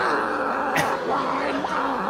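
A man's voice imitating a wounded chicken: one long, wavering cry.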